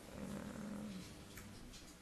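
A person's brief, low murmured hum, under a second long, followed by a faint click.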